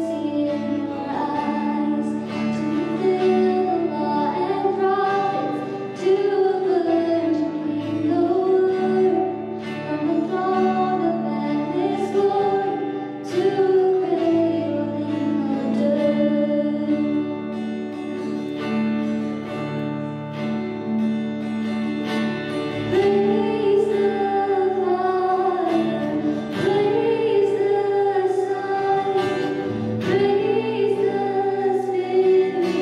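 Live worship band playing a song: a woman sings the lead melody with a second voice alongside, over strummed acoustic guitar and the band's sustained low notes.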